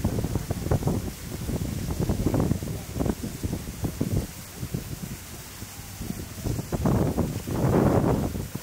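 Wind buffeting the microphone in uneven gusts, strongest near the end, with the splash and lap of pool water from a child swimming close by.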